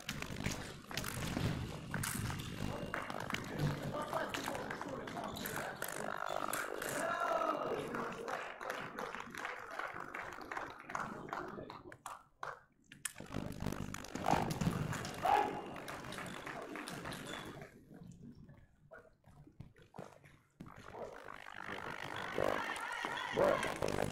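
Indistinct voices, with a few scattered clicks and knocks. The sound drops away to quiet briefly about halfway through, and again for a couple of seconds a little before the end.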